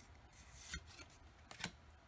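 Pokémon trading cards being slid off the front of a hand-held stack: faint rubbing of card against card, with two light snaps about a second apart.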